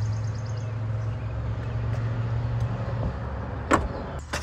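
Power liftgate of a Hyundai Santa Fe closing under its electric drive: a steady low motor hum for about three seconds, then a sharp thump as it latches shut near the end.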